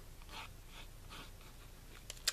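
Mechanical pencil drawing a stem line on heavy watercolor card: a few faint, soft scratching strokes.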